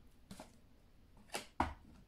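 A tarot card drawn from the deck and laid down on the wooden table: a faint tick, then two sharp taps close together about a second and a half in, the second with a soft thump.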